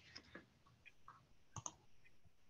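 Near silence broken by a few faint clicks, two of them close together about one and a half seconds in.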